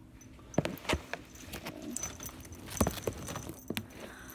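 A small pet harness being handled and fastened on a ferret: a scattering of light, irregular clicks and jingles from its buckle and metal fittings, about half a dozen sharp ticks.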